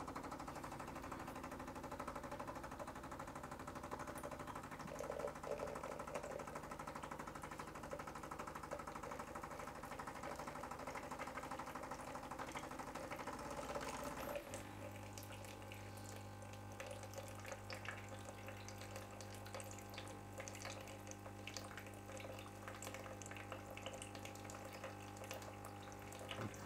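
Bosch Tassimo Style coffee machine running its first water-only cleaning cycle: a faint, steady mechanical buzz that sounds like roadworks. About halfway through, the sound changes to a lower, steadier hum as hot water starts streaming into a plastic jug.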